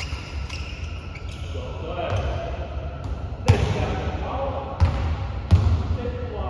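Basketball bouncing on a hardwood gym floor, three loud bounces in the second half that ring in the hall, with players' voices talking.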